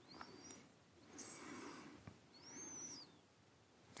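Near silence: room tone, with two faint soft sounds in the middle, the second carrying a brief faint high rising-and-falling chirp.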